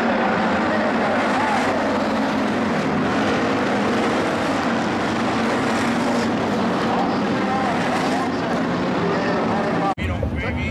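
A pack of IMCA Hobby Stock dirt-track race cars' V8 engines running together under race power, a steady loud drone.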